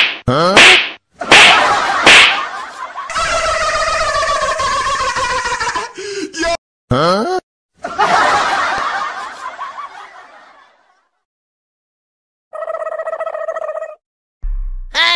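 A string of edited-in comedy sound effects: several sharp slap-like hits and quick sliding tones in the first couple of seconds, then a long sound whose pitch falls, more short hits, and a hiss that fades away. Near the end comes a steady buzzing tone of about a second and a half.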